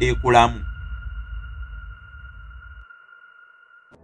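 Background soundtrack: a steady high electronic tone held for nearly four seconds over a low bass pulse. The bass fades out about three seconds in, and the tone stops suddenly just before the end.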